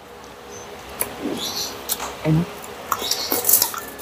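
Crispy fried pork belly crunching as it is pulled apart by hand and chewed: short crackling crunches, one cluster about a second in and a louder one near the end.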